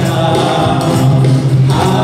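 A Bengali song performed live: several voices singing together over a band with guitars and keyboard, holding a long note and moving into a new phrase near the end.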